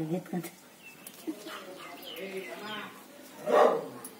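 A single short, loud bark about three and a half seconds in, after faint voices in the background.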